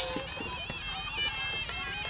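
Traditional ring music of a Kun Khmer fight: a sralai (Khmer oboe) melody of held notes stepping up and down in pitch, over drums.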